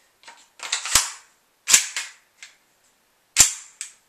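WE Tech Glock 17 gas blowback airsoft pistol's action being worked by hand, giving three loud, sharp clacks about a second in, just under two seconds in and near the end, with softer clicks between them.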